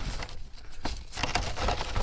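Black plastic rubbish bag rustling and crinkling, with plastic litter shifting inside as it is handled.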